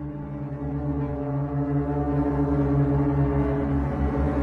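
Low, sustained drone from a horror film score, several steady low tones held together and slowly swelling in loudness.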